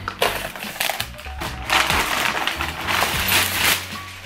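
Plastic poly mailer crinkling and rustling in irregular surges as it is cut open and a fabric duffel bag is pulled out of it, over background music.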